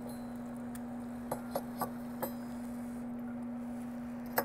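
Steady hum of the L160 hydrogen generator running, with a few light clicks from the brass torch valves as they are closed one by one to put out the flames.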